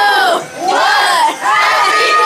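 Crowd of people shouting and cheering together, the voices breaking into long held cries near the end.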